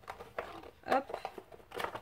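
A few light knocks and rustles of small objects being handled and set down, with a short spoken "hop" about a second in.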